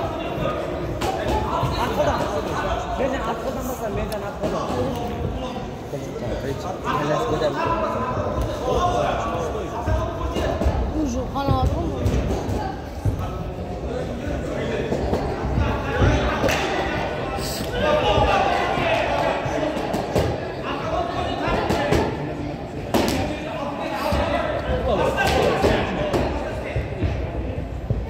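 Voices of spectators echoing in a large hall, with occasional dull thuds from the boxing ring as the two young boxers move on the canvas and trade punches.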